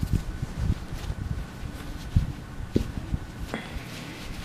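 Handling noises: scattered soft knocks and low thuds, with a sharper click about three and a half seconds in.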